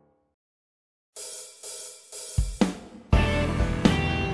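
Background music: one piece fades out into about a second of silence, then a new track starts with hi-hat and cymbal strokes. Bass and drums join about a second later and grow louder near the end.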